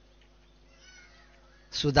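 A pause with only a faint steady hum, then a man's voice starts speaking loudly near the end.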